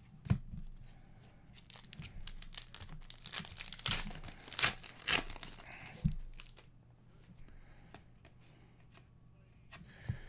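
Upper Deck Series 1 hockey cards being flipped and slid against one another in the hand, making a run of papery, crinkling scrapes in the middle, with a couple of light knocks against the table near the start and about six seconds in.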